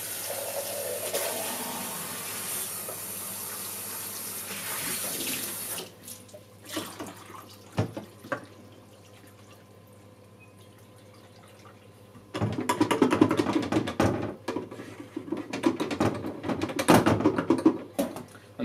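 Kitchen tap running into a glass beaker for about six seconds, then a few light knocks, and from about twelve seconds in an uneven splashing of rinse water in the Lomo developing tank as the film is washed free of stop bath.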